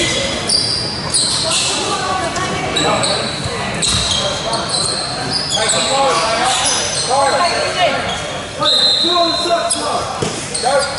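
Indoor basketball game on a hardwood court: a ball bouncing, sneakers squeaking and players calling out, all echoing in a large hall.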